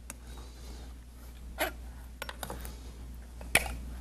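Kitchen knife working at the lid of a tin can: a few scattered sharp clicks and taps of metal, the loudest about three and a half seconds in, over a low steady hum.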